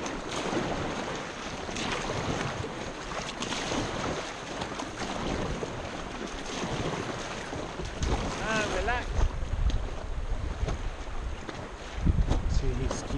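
Fast river water rushing around an inflatable raft, with wind buffeting the microphone, heavier from about eight seconds in.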